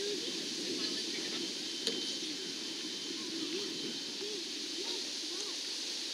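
Indistinct voices of people talking at a distance over a steady background hiss, with a single sharp click about two seconds in.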